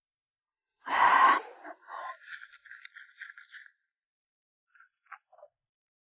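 A person eating from a bowl of thin rice porridge: a short loud breathy vocal exhale about a second in, then nearly two seconds of quick, choppy slurping.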